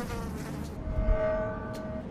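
Houseflies buzzing as a cartoon sound effect, the buzz wavering in pitch and then holding steadier, with a low thump about a second in.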